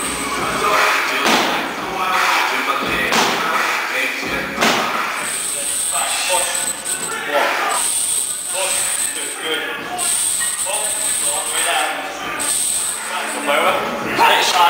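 Indistinct voices, with a few sharp thuds and clanks in the first few seconds from a barbell loaded with plates and hanging chains.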